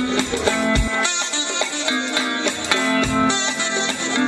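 Live band music: guitar lines over low drum beats.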